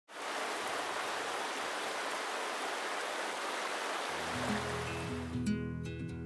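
A steady, even rushing noise. About four seconds in, intro music with held bass notes comes in as the noise fades, and plucked guitar notes join just before the end.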